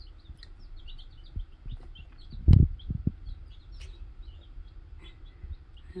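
A brood of baby chicks peeping, many short high cheeps that slide downward, several a second. About two and a half seconds in there is a loud dull thump, with a few softer knocks around it.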